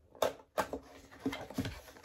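Cardboard product box being opened by hand: two sharp clicks in the first second as the sealed flap gives, then softer rustling and light knocks of the box being handled.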